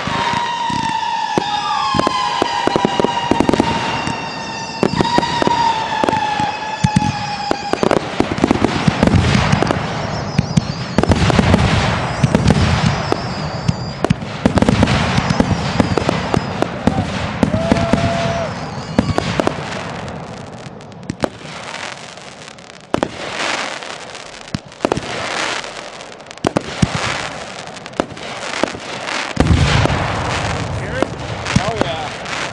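Consumer firework cakes firing: a dense run of launch thumps, aerial bursts and crackle, thinning to single bursts about every two seconds in the second half. A steady whistling tone carries through the first eight seconds or so.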